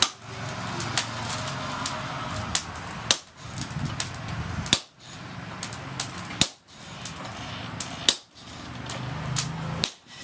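Sledgehammer blows on red-hot disc plough steel held on an anvil: sharp metal-on-metal strikes, about one to two a second, a few of them much louder than the rest. A steady low hum runs underneath.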